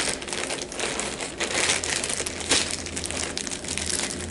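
Plastic mailer bag crinkling and rustling as it is pulled open and the contents are drawn out, in a run of short irregular crackles.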